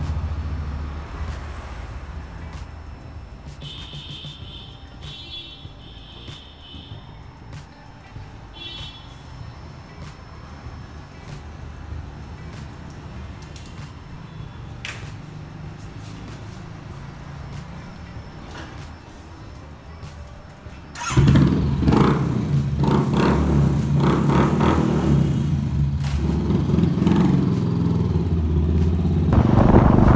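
Motorcycle riding at speed on a highway, a loud, dense engine and road noise that starts suddenly about two-thirds of the way in, after a quieter stretch with a low hum.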